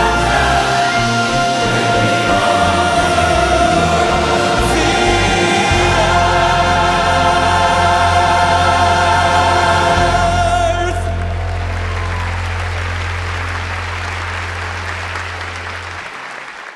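Church choir and orchestra holding the last chord of a worship song, which cuts off about eleven seconds in. Audience applause follows and fades toward the end.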